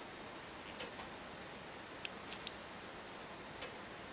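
Faint, irregular single clicks from a Geiger counter (Radiation Inspector Alert), about five in four seconds at random spacing, over a low steady hiss.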